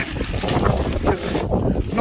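Wind buffeting the microphone, a low rumbling noise that rises and falls in strength.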